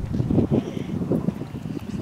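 Wind buffeting the microphone outdoors: an irregular, gusting low rumble.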